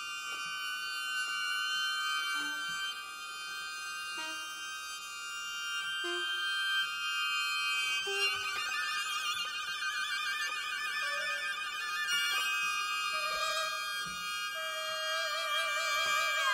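Contemporary chamber music for a Korean bamboo wind instrument and strings (violin, cello): long, held high notes that take on a wavering vibrato about halfway through, over short lower notes every couple of seconds.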